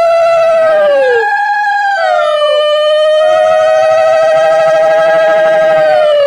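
Long, loud horn-like blown notes, two or three overlapping one another, each held steady and then bending down in pitch as it dies away.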